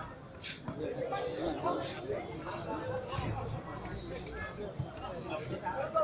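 Indistinct chatter of several people talking at once, with a few short sharp knocks among the voices.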